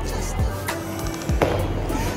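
Bowling ball released onto the lane and rolling down it, over background music with a steady beat.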